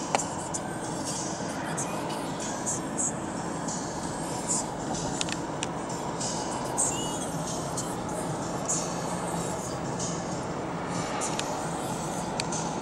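Steady road and tyre noise inside a moving car, with scattered light clicks.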